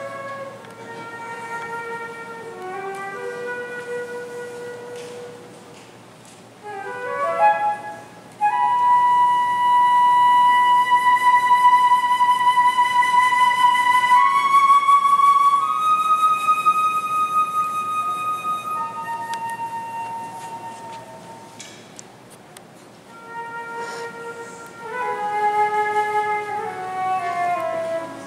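Unaccompanied concert flute playing a slow solo melody: short phrases of stepping notes, a quick upward run about seven seconds in, then a long, loud held high note that steps up twice and slowly fades, with new phrases starting near the end.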